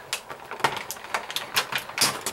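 Light, irregular clicks and taps of small plastic toy pieces and packaging being handled, several a second.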